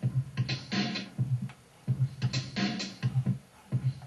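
Electronic drum beat from Ableton Live, triggered from a drum pad controller, playing in a steady repeating pattern of low thuds and crisp higher hits.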